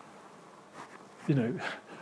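Quiet room tone, then a little past a second in a brief vocal sound from a person, about half a second long, with a pitch that dips and rises.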